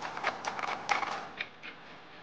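LimX Dynamics Tron1 biped robot's point feet striking dry leaf litter and twigs as it walks, a quick run of sharp clicks and crunches. The hits thin out after about a second and a half.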